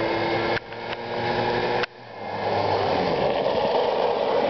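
Small quad bike (ATV) engine running, with steady engine tones at first; the sound breaks off abruptly about half a second in and again near two seconds, then a rougher engine noise grows louder as the quad comes close.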